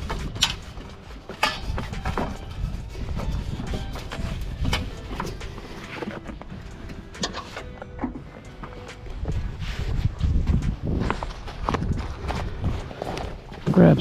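Scattered knocks and clicks from gear being handled on a trailer, and footsteps, over a low rumble.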